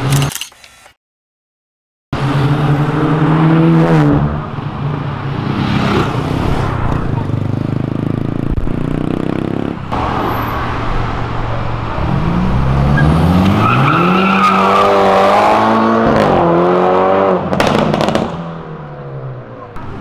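A turbocharged BMW sedan's engine and exhaust running loud at low revs, then revving up several times in quick succession, rising in pitch each time, before dropping off near the end. The sound starts after a second or two of dead silence.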